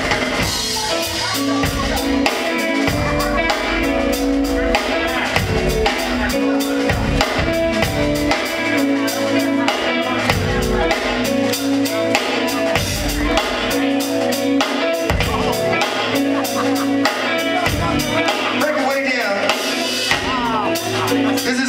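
Live old-school funk band playing, with a drum kit and bass groove under sustained chords.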